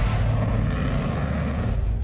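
Sukhoi twin-engine fighter jet in flight, a steady loud roar of its engines with a deep rumble; the higher hiss dies away near the end.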